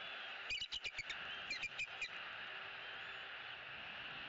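Bald eagles chirping: two quick runs of short, high piping notes, about half a second and a second and a half in, over a steady background hiss.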